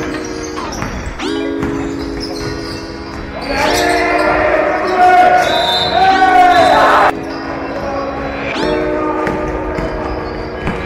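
Basketball game on a wooden gym floor: the ball bouncing, sneakers squeaking and players calling out, over background music. The busiest, loudest stretch comes between about four and seven seconds in.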